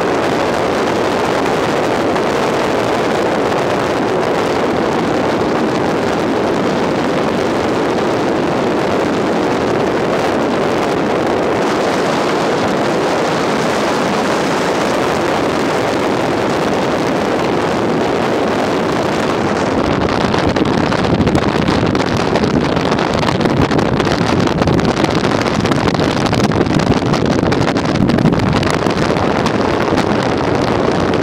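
Steady rushing wind and road noise on the microphone of a camera moving along behind a cyclist, growing a little louder and rougher about two-thirds of the way through.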